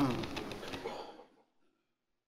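Muffled voices in a large hall that fade out within the first second or so, then the sound cuts to dead silence.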